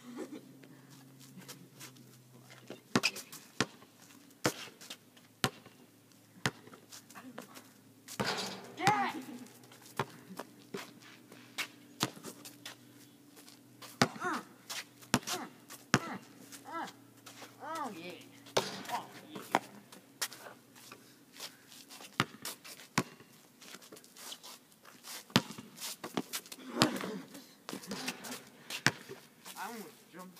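Basketball bouncing on an outdoor asphalt court: sharp single bounces, mostly about a second apart, during one-on-one play. Players' short shouts and calls come in between.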